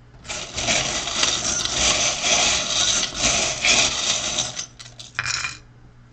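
Small metal charms rattled together in a wooden bowl: a continuous jingling clatter for about four and a half seconds, then a few separate clicks and a short last rattle near the end.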